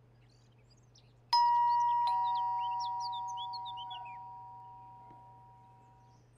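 Two-tone ding-dong doorbell chime: a higher note about a second in, then a lower one just under a second later, both ringing on and fading slowly, as a visitor arrives at the door. Birds chirp faintly over the chime.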